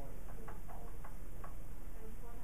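Dry-erase marker writing on a whiteboard: a handful of faint, irregular ticks and short squeaks as the strokes go down, over a low steady room hum.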